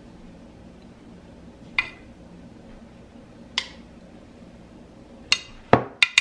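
A spoon clinking against glass cookware while sauce is spread over a meatloaf: four short, sharp clinks, two of them close together near the end, the last one duller and louder.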